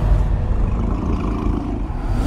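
A low, steady rumbling drone of horror-trailer sound design, with faint held tones above it and no distinct hits.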